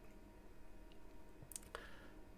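Quiet room tone with two faint, sharp clicks about a second and a half in.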